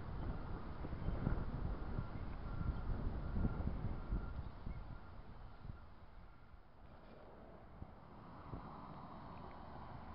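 Wind rumbling on a small camera's microphone, heavier in the first half and easing after about five seconds.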